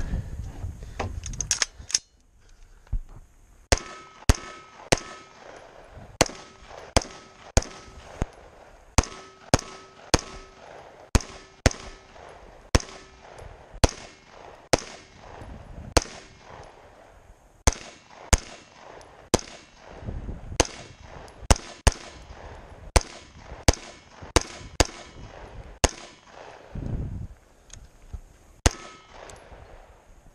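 Scoped AR-style rifle fired in a long string of single shots, about forty in all at one to two a second, with brief pauses about halfway through and near the end. A faint ring lingers after some of the shots.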